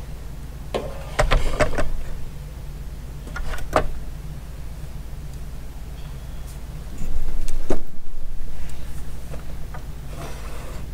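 Handling noise as a plastic power-tool charger and its bundled power cord are moved and set on a kitchen scale: a few knocks and rustles about a second in and again near four seconds, the loudest clatter about seven seconds in. A steady low hum runs underneath.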